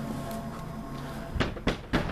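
A steady low drone, then three sharp knocks in quick succession about one and a half seconds in.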